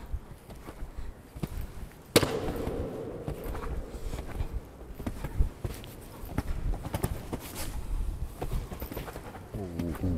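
Hoofbeats of a horse cantering on an arena's sand footing as it approaches and jumps a fence, heard as a string of soft irregular thuds. A sharp knock sounds about two seconds in.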